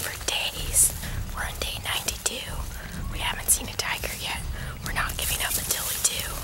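A woman whispering close to the microphone, in short phrases with sharp hissing consonants, over a low steady rumble.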